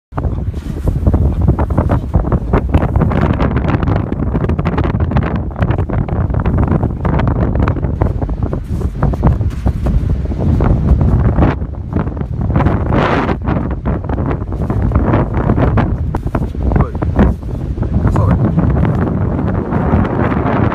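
Strong wind buffeting the microphone, a loud rumble that rises and falls with the gusts.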